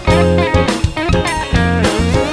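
Instrumental band passage with an electric guitar lead that has notes sliding in pitch, over bass guitar and a drum kit.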